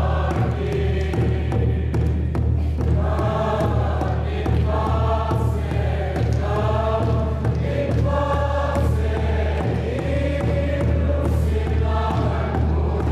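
A congregation singing a hymn together, many voices in long held notes, over a steady low hum.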